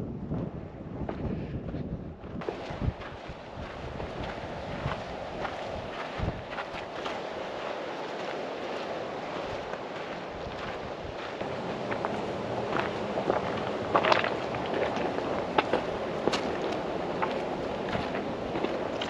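Footsteps on a rocky, stony trail with wind noise on the microphone, with scattered sharp clicks of boots striking and shifting stones, louder and more frequent in the second half.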